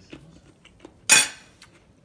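Someone eating with a metal fork: faint soft clicks of chewing, then one sharp clink of the fork against the plate about a second in.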